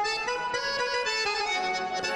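Accordion playing held chords, with a reedy, bandoneón-like tone; the chord changes about a quarter second in and again just past a second.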